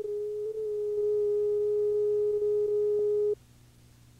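A steady electronic test tone, one mid-pitched beep held for just over three seconds and then cut off abruptly.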